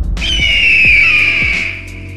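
A bird-of-prey scream sound effect: one long, high screech that falls slowly in pitch, over background music with a steady beat.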